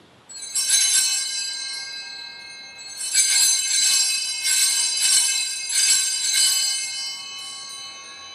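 Altar bells, a cluster of small hand bells, shaken at the consecration as the host is elevated. A first ring comes about a third of a second in, then a longer run of repeated shakes from about three seconds, fading toward the end.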